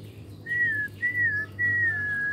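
Someone whistling three short high notes in quick succession, each sliding slightly down at its end.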